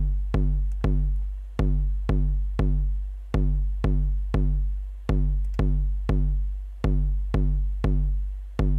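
Eurorack bass drum module struck by gates from a GateStorm sequencer, playing a repeating kick pattern of three hits about half a second apart, the group coming round roughly every 1.75 seconds. Each kick has a short click and a deep, decaying low tone.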